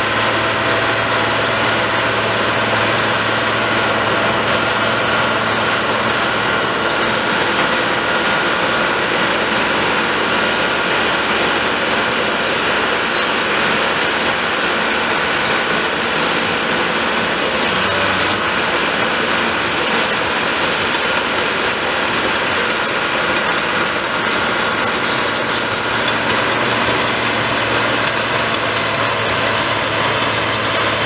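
Small Caterpillar crawler dozer's diesel engine running steadily and loudly close by as the machine pushes and spreads crushed stone with its blade.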